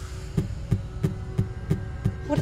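Trailer score: a low, steady rumble with a deep pulse beating about three times a second, like a heartbeat.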